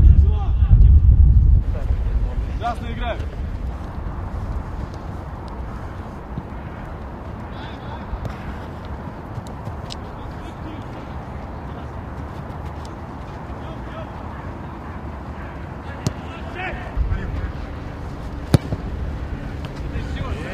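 Outdoor football-training ambience: distant voices calling, wind rumbling on the microphone at the start and again near the end, and a few sharp knocks, the loudest about two-thirds of the way through the second half.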